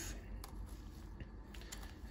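A few faint clicks and scrapes of an adhesive removing plier's blade stroking across a model tooth, the clearest about half a second in: leftover bracket resin chipping off the tooth surface.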